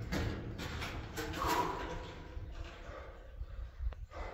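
Fresh-cut timber boards knocking against each other and the wet rock floor as they are set down and laid across one another, with a few short sharp knocks in the first second or so and another near the end. A low steady rumble runs underneath.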